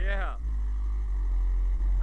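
Car-audio subwoofers (two DB Drive Platinum series 15s on an Audiobahn 3000-watt amp) playing at high volume, a deep steady bass that runs through the whole stretch. A short voice is heard right at the start.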